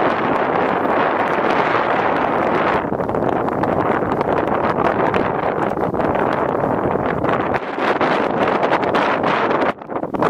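Wind blowing hard across the microphone: a loud, steady rush that dips briefly near the end.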